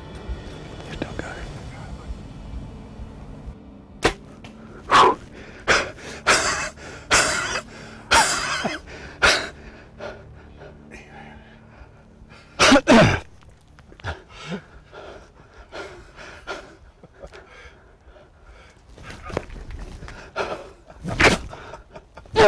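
A single sharp snap about four seconds in, from a Bass Pro Shops Blackout compound bow being shot, then a run of loud, breathy panting and gasps from the excited hunter.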